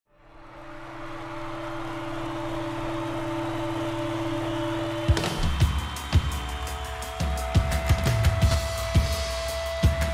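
Promo soundtrack music: low held tones fade in from silence and swell over the first five seconds, then a sharp hit about halfway through starts a beat of percussive strikes over sustained tones.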